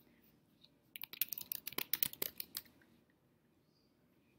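Typing on a computer keyboard: a quick run of key clicks starting about a second in and lasting about a second and a half.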